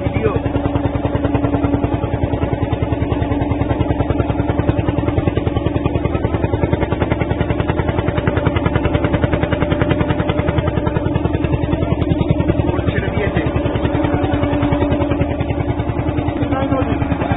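Ferry boat's engine running steadily and loud, with a rapid, even chugging pulse over a constant hum.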